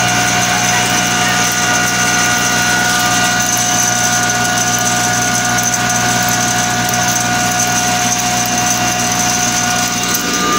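Motor-driven grain mill of the kind used for husking paddy, running steadily: a constant machine hum under a fixed high whine, with no change in speed.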